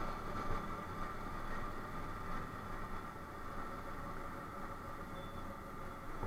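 Motorcycle cruising at a steady speed: engine running with steady wind and road noise and a faint steady whine.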